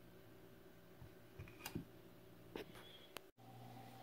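Near silence: faint room tone with a few soft, brief clicks, and a momentary total dropout about three seconds in, after which the room tone changes slightly.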